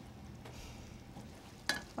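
Faint stirring of simmering tomato sauce in a saucepan with a spatula, a soft low hiss with no distinct strokes. A short click near the end.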